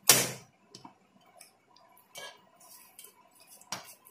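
Kitchen knife knocking and scraping against a stainless steel plate as watermelon rind is cut away: a sharp clack at the start, another about two seconds in and a third near the end, with fainter ticks between.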